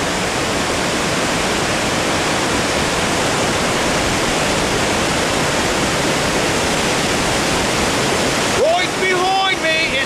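Loud, steady rush of a waterfall and fast river water pouring over granite rock.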